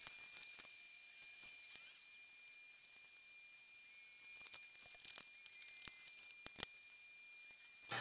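Very faint light clicks and ticks of laminating pouches and paper sheets being handled on a cutting mat, the sharpest about six and a half seconds in, over a faint steady high-pitched tone.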